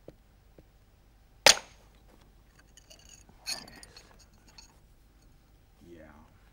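A single sharp, loud crack as a wooden mallet strikes a punch set on a flint core, detaching a long flint blade by indirect percussion. A couple of light taps come before it, and about two seconds after it a fainter clinking rustle of flint being handled.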